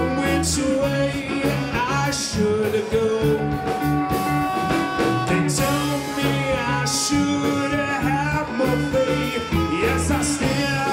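Live band music: electric guitar, bass guitar and drum kit with alto saxophone, a repeating bass line under it and a voice singing over the top. Cymbal crashes ring out a few times, and a few long held notes sit in the middle.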